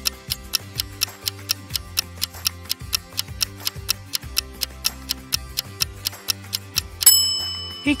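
Countdown-timer sound effect: steady clock ticking over soft background music, ending about seven seconds in with a sudden, loud ringing tone that signals time is up.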